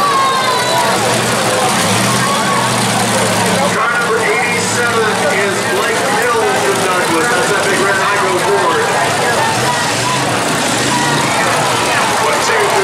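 Demolition derby cars' engines running loud and steady, their pitch shifting now and then, under a crowd's voices.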